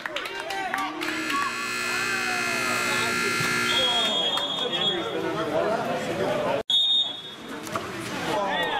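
Poolside water polo game buzzer sounding one steady tone for about three seconds, over spectators' voices. A short, high whistle blast comes near the end of the buzzer and another about seven seconds in.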